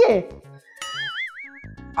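A short comic sound-effect sting: an electronic tone wobbling up and down for about a second, then cutting off. A woman's line of speech trails off just before it.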